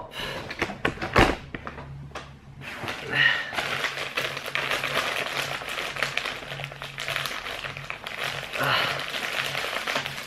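A thin plastic courier mailer bag rustling and crinkling as it is torn open by hand and a t-shirt is pulled out, after a few knocks in the first second.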